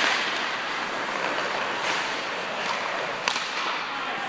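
Hockey skates scraping and carving on rink ice, with one sharp crack of a hockey stick striking the puck a little over three seconds in.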